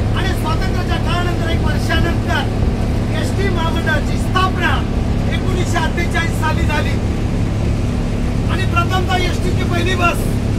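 A man's voice speaking loudly in an Indian language, with a short pause near the end, over the steady drone of a bus engine running.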